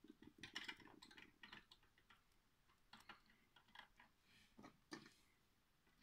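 Near silence with faint, scattered clicks and taps of small plastic toys being handled, a cluster in the first second and a half and a few single taps later.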